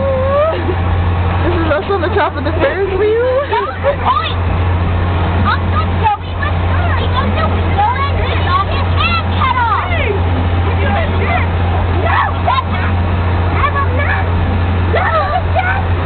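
High-pitched children's voices shouting and chattering, their pitch swooping up and down, over a steady low machine hum.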